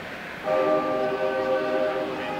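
A loud horn-like blast over the arena sound system. It is one steady held tone that starts about half a second in and lasts about a second and a half.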